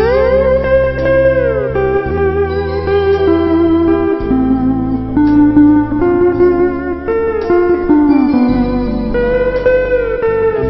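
Hawaiian lap steel guitar playing a slow melody, gliding up and down between held notes, over a steady bass and chord accompaniment.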